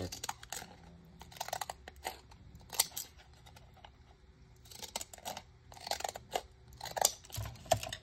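Small scissors snipping through a paper tag: a string of short, irregular snips as its edge is trimmed.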